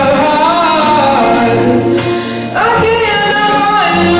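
Young man singing a solo into a microphone over backing music, holding long, sliding notes, with a short break a little past halfway before he starts the next phrase.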